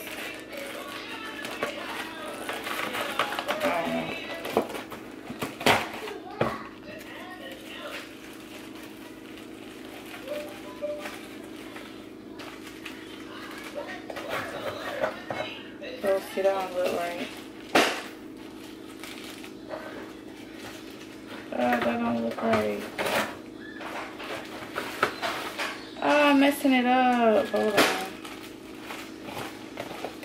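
Background voices and music, with plastic storage bags and their cardboard box being handled and a few sharp knocks.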